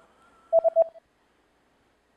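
Three quick electronic beeps at one steady pitch, about half a second in: a short prompt sound effect cueing the viewer to answer.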